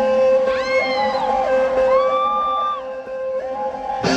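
Live rock band opening a song: a steady held note rings under two high, arching vocal whoops, and the full band with strummed guitars comes in right at the end.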